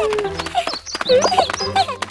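Cartoon characters' short, high-pitched wordless vocal cries, several in quick succession, over light background music.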